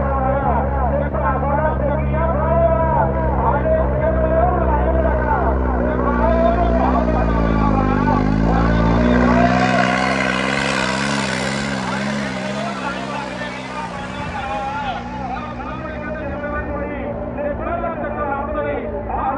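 New Holland 3630 tractor's three-cylinder diesel engine running hard under load as it drags a harrow, its pitch dipping and rising again about eight seconds in and its deep rumble fading soon after. A voice over loudspeakers runs over it throughout.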